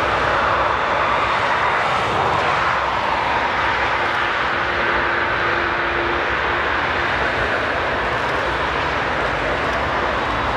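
Emirates Airbus A380's four turbofan engines running on the runway: a loud, steady jet rush that holds at a constant level. A faint steady hum joins it for a couple of seconds in the middle.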